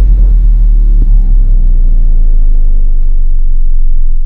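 Loud, steady, deep bass rumble of a cinematic logo-intro sound effect.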